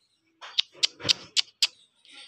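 A quick run of five sharp clicks, about four a second, starting about half a second in.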